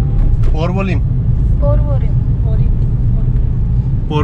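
Steady low rumble of engine and tyre noise inside the cabin of a Tata Tiago driving along a wet road.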